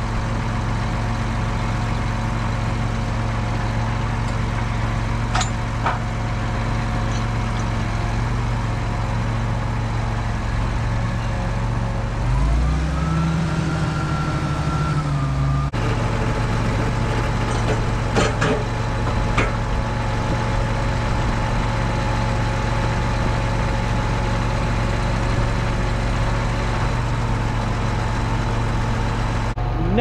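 John Deere 8530 tractor's six-cylinder diesel idling steadily. About twelve seconds in it revs up and holds higher for about three seconds. A few sharp knocks sound over the engine.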